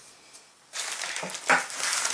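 Rustling, scraping handling noise from hands moving objects over a paper-covered table. It starts suddenly about three-quarters of a second in, with a sharper scrape about halfway through.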